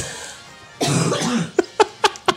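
A person coughing once, a short rough burst a little under a second in, followed by two short sharp clicks.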